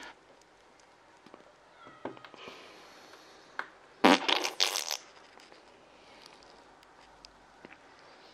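Fingers pressing an M10 steel bolt into the glue-filled hex recess of a 3D-printed plastic knob: faint clicks and handling, then a short burst of several pulses about four seconds in as the glue is squeezed.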